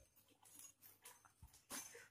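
Near silence: faint room tone with a couple of faint short clicks in the second half.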